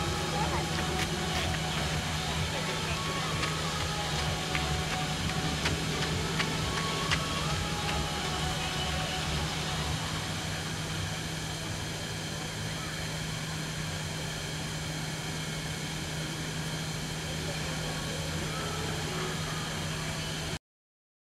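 Outdoor background of indistinct distant voices over a steady low hum, with a few faint clicks.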